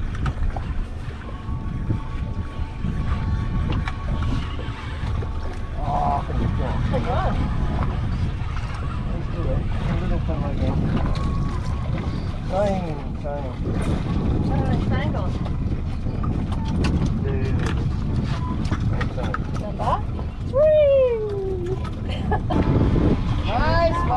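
Steady low rumble of wind and water around a small drifting boat, with people's voices calling out now and then and a loud, drawn-out falling call near the end.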